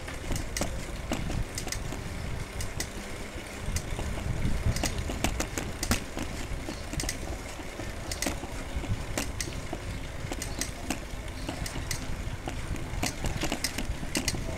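Footsteps on a paved street, short irregular clicks about one to two a second, over a steady low rumble of wind on the microphone.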